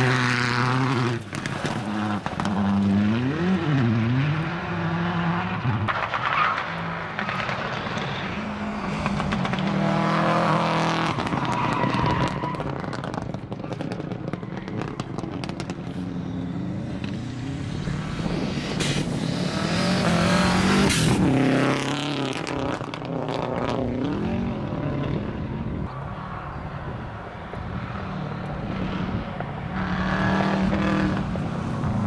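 Rally cars racing past one after another, engines revving up and down through gear changes. The sound is loudest as a car passes close in the first few seconds and again around twenty seconds in.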